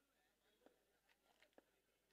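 Near silence, with a few faint short clicks about halfway through.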